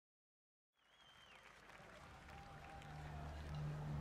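Live concert sound fading in from silence: faint audience noise with a brief high whistle near the start and a low steady drone from the stage sound system, slowly growing louder.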